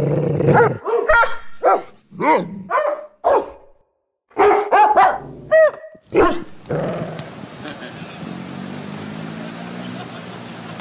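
Dogs barking in a series of short, loud barks and a few higher yelps over the first six seconds, then a steady outdoor hiss with a low hum.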